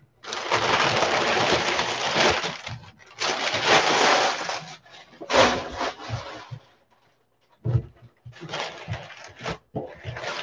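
Crumpled brown kraft packing paper crackling and rustling as it is pulled out of a cardboard shipping box, in two long stretches of about two seconds each, then shorter rustles and a brief knock against the box near the end.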